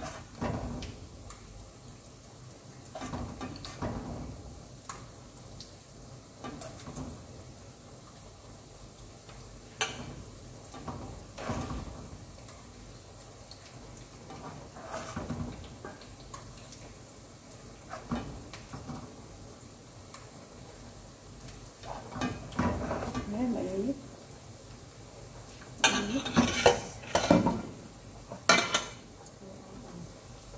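Cooking tongs knocking and clattering against a frying pan as fishballs are turned while they fry, with a run of louder clatters near the end.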